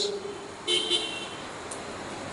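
A short car horn toot, about a third of a second long, a little under a second in, over a steady faint background hiss.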